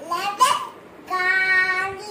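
A young child's voice: a short rising call, then a long held, sung note about a second in.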